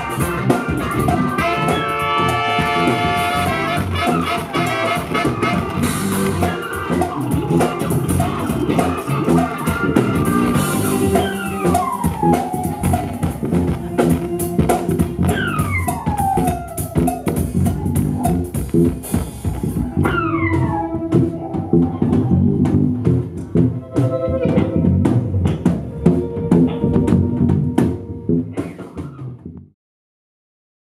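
Live band improvising together: electric keyboard, electric guitar, bass and drum kit, with several falling pitch slides in the middle. The music fades and stops just before the end.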